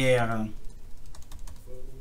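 Computer keyboard being typed on: a quick run of light key clicks after a brief spoken sound at the start.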